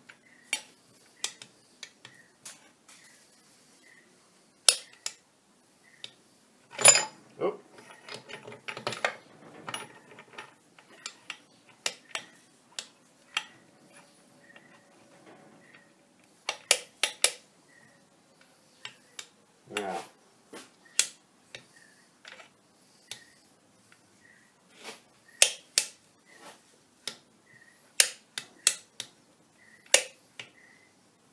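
Steel gears and shafts of a lathe apron gearbox clinking and clicking as they are handled and fitted together by hand: scattered sharp metal clinks, busiest about a quarter of the way in.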